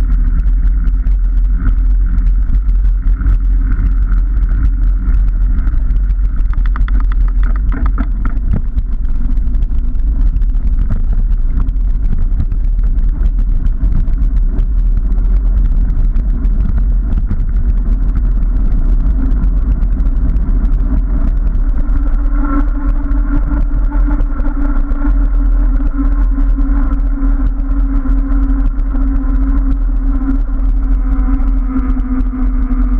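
Riding noise from a bicycle with knobbly tyres, taken from a handlebar camera: steady wind buffeting on the microphone and a rumble of the tyres on tarmac. About two-thirds of the way through, a steadier humming tone sets in as the path turns smooth.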